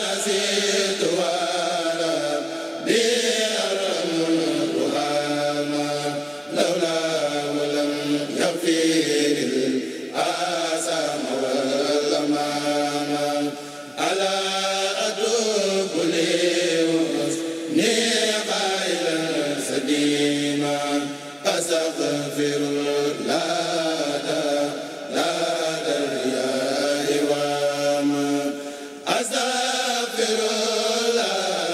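A large group of men chanting Mouride khassida (Arabic religious poems) in unison through microphones and a PA system. They sing in long melodic phrases, with a short break every few seconds.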